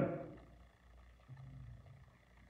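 A man's speaking voice trails off, then a quiet pause with a faint low hum for about the last second.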